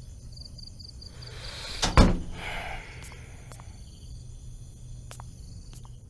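A door swung shut: a short swish, then one loud thud about two seconds in, followed later by a few faint clicks.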